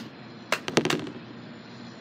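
A few sharp pops or clicks in quick succession, one about half a second in and a tight cluster just after.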